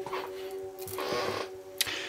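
Tarot deck being shuffled by hand: a papery rustle of cards about a second in and a couple of sharp card clicks, over steady background music.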